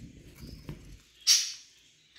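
A budgerigar chick being handled gives one short, raspy call about a second in, over faint rustling of feathers and hands.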